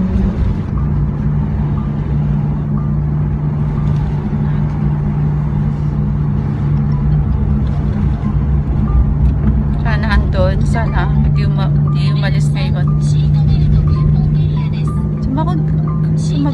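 Car cabin noise while driving: a steady low rumble of road and engine, with a steady low hum. From about ten seconds in, a voice or music with a wavering pitch joins it.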